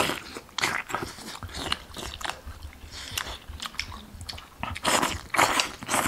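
Close-miked eating sounds of boiled dumplings in soup: irregular wet chewing and smacking, with a few louder slurps near the start and again about five seconds in.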